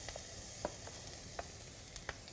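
Minced garlic sizzling in hot oil in a ceramic-coated pan, a steady faint hiss, with a couple of light clicks of a wooden spatula scraping the garlic off a plate.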